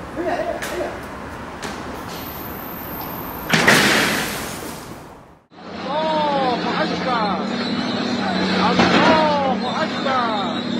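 A loud crash about three and a half seconds in that dies away over a second or so. Then a bulldozer runs with a steady low engine note, over which come repeated high squeals that bend in pitch.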